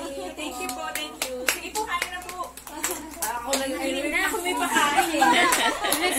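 Women laughing and talking excitedly, with sharp hand claps scattered through.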